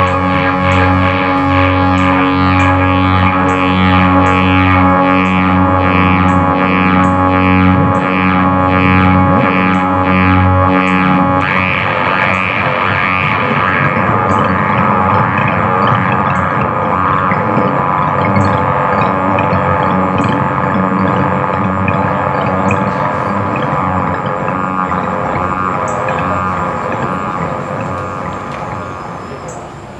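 Live electronic synthesizer music: a sustained droning chord over low bass notes with an even pulsing pattern, which gives way about eleven seconds in to a denser, noisier wash. It begins to fade near the end.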